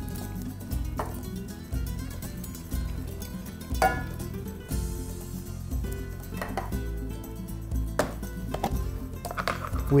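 Soft background music under about half a dozen sharp knocks and clinks, a second or two apart, of an emptied tin can against an enamel cooking pot as crushed tomatoes go in.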